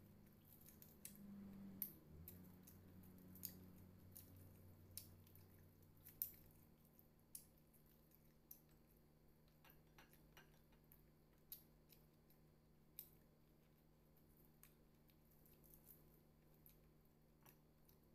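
Faint, scattered sharp crackles and clicks, about a dozen of them, from crispy fried chicken being pulled apart by hand and eaten, with faint mouth sounds over near silence.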